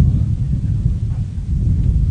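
Wind buffeting an outdoor microphone: a loud, uneven low rumble with no clear pitch.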